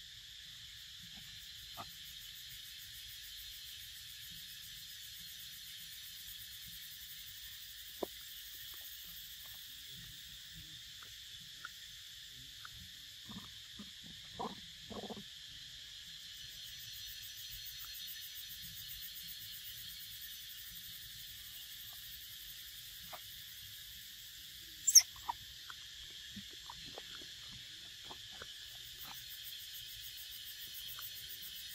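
Steady, high-pitched drone of an insect chorus in the forest, with a few soft clicks and short low sounds from the monkeys feeding close by. About 25 seconds in, a single sharp high squeak stands out as the loudest sound.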